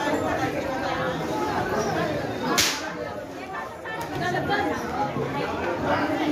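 Crowd of people chattering and talking. About two and a half seconds in there is one brief, sharp hissing crack, the loudest moment.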